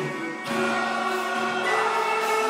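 A mixed choir singing Turkish art music with an instrumental ensemble accompanying it; a fuller sung passage of held notes comes in about half a second in.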